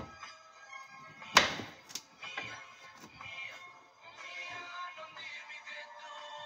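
Background music, with a sharp knock about a second and a half in and a lighter one shortly after: a kitchen knife cutting through a pear and striking a plastic cutting board.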